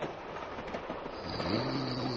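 Radio-drama sound effect of a train carriage running steadily. About two-thirds of the way in, a man starts a low snore.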